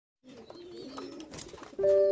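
Pigeons cooing softly, low wavering coos with a few light clicks; near the end, louder background music begins with steady held notes.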